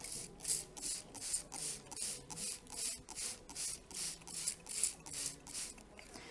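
Hand trigger spray bottle misting peat pellets: a quick run of short spritzes, close to three a second.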